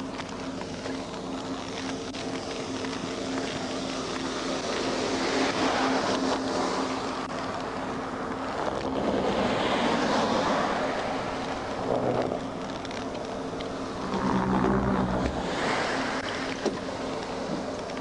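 Roadside outdoor noise: a steady low engine hum under a rushing wind-like noise that swells and fades several times, loudest around the middle and again about three-quarters of the way through.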